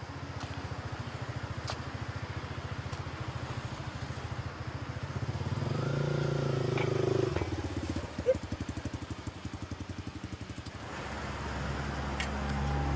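Motorcycle engine idling with a steady, rapid pulsing beat, growing somewhat louder about halfway through.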